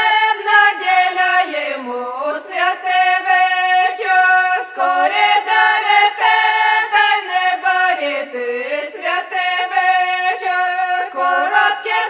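A Ukrainian folk vocal ensemble singing a traditional song in several-part harmony, with the voices sliding down in pitch at phrase ends about two seconds in and again past the eight-second mark.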